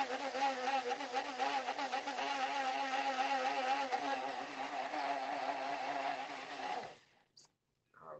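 Personal bullet-style blender running, its motor whining steadily with a slight wobble in pitch as it purées diced tomatoes into sauce, then cutting off suddenly about seven seconds in.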